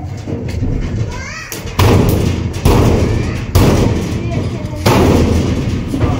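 Steel almirah being shifted by hand, its sheet-metal body giving a series of about five heavy thuds, each with a low rumbling tail.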